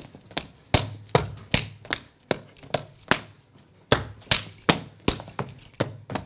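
Cretan male dancers' percussive strikes in the pentozali: hands slapping boots and legs and feet stamping, in sharp, uneven claps and thuds about three a second, with no music.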